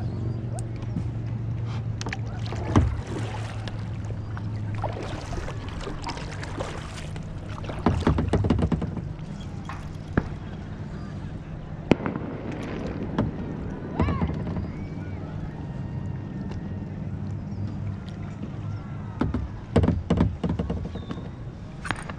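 Knocks, clicks and small splashes of paddling and tackle handling in a kayak, with a cluster of sharp knocks about eight seconds in and another near the end. A steady low hum runs underneath.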